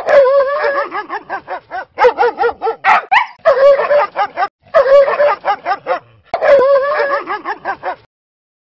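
Short intro sound clip of high, dog-like yips and whines, in about five bursts with brief breaks. Each burst has a wavering drawn-out whine and quick yaps, several a second, and the clip cuts off abruptly at the end.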